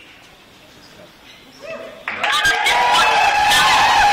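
A crowd in a large hall cheering and whooping, breaking out suddenly about halfway through after a lull of low room murmur.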